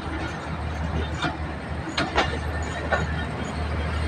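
Passenger train coaches rolling slowly past, their wheels clacking over rail joints about once a second over a steady low hum.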